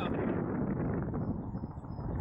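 Wind buffeting an outdoor camera microphone: a steady low rumble and rustle that fades away during the second half.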